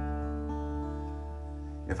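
Acoustic guitar playing a song's opening: a chord rings out and slowly fades, with another note added about half a second in. A man's singing voice comes in at the very end.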